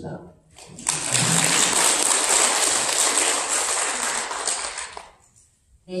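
Audience applauding, starting suddenly about a second in, staying steady, then dying away about five seconds in.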